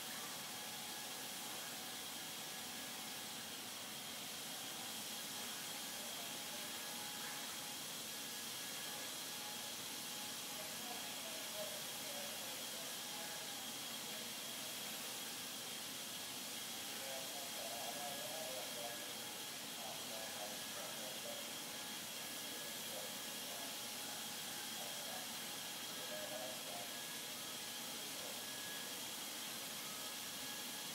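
Steady hiss of a robotic spray-paint booth, with air flowing and paint atomisers spraying a car body shell. A faint constant high tone runs under it.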